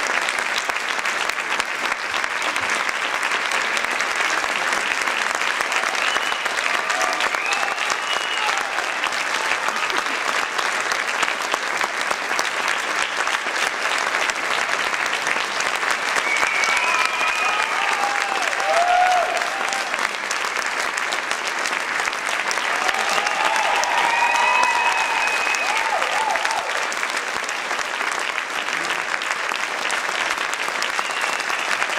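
Audience applauding steadily through a curtain call, with a few individual voices calling out above the clapping three times.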